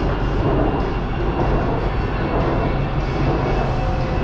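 Steady running noise inside a moving BTS Skytrain car on Bangkok's elevated Sukhumvit line: an even rumble of the train travelling along the track.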